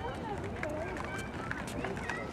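Indistinct background chatter of several people talking, with a few light footsteps on pavement in the second half.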